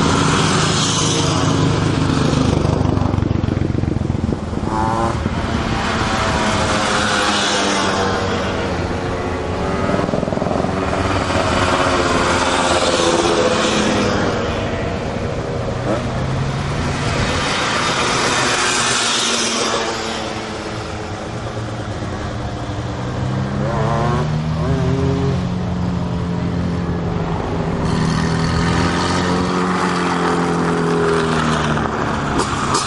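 Small engines of Ape three-wheeler racers revving hard uphill as they pass one after another. Engine pitch rises and falls with each machine, and there are several passes over the stretch.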